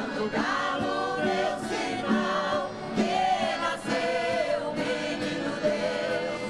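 A mixed group of older singers singing together in chorus, accompanied by acoustic guitars, with one man's voice on a microphone at the front.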